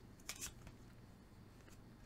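Mostly near silence, with a brief soft scrape of a tarot card being slid off the deck about a third of a second in.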